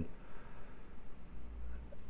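Quiet room tone: faint background noise with a low hum that swells slightly in the second half, and a thin faint high tone partway through.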